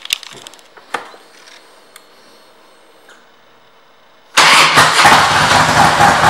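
A couple of clicks, then the 2005 Harley-Davidson Ultra Classic's Twin Cam 88 V-twin fires up suddenly about four seconds in. It runs loud and steady through Vance & Hines aftermarket pipes.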